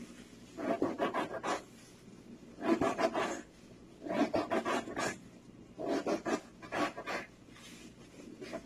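Plastic-gloved hands mixing a rice stuffing for mahshi in a plastic tub: rubbing, rustling sounds in five short bursts.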